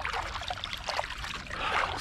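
Kayak paddle strokes: the blades dipping into the water and water trickling and dripping off them, in a run of small irregular splashes.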